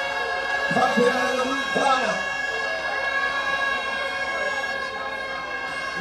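A steady high whine made of several held tones runs without a break, with brief bits of a voice about one and two seconds in.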